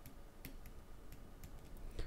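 A few faint, irregular clicks of a stylus tapping on a drawing tablet as a label is handwritten, over a low steady room hum.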